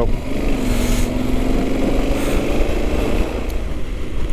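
Yamaha XT1200Z Super Ténéré's parallel-twin engine pulling under throttle while riding, its note rising gently over the first couple of seconds and then levelling off, with wind noise over it.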